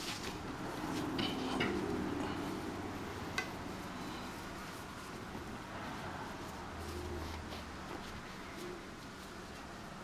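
Faint rustling and handling of braided cords being tied into a knot by hand, with a few light clicks about a second in and one more a few seconds later.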